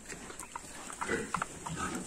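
Young sows (gilts) giving a few short, quiet grunts as they root with their snouts in sandy ground.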